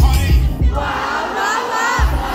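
Live concert sound: a heavy bass beat that drops out under a second in, leaving the audience singing and shouting along with many voices at once.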